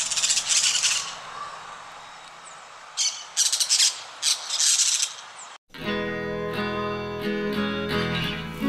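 Parakeet squawking: one long harsh screech at the start, then a quick run of four shorter screeches about three to five seconds in, over a faint steady hiss. At about five and a half seconds the sound cuts off suddenly and plucked acoustic guitar music takes over.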